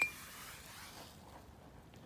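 A glass jar gives one short, ringing clink right at the start as it is lifted off a blackberry cutting, followed by faint outdoor background.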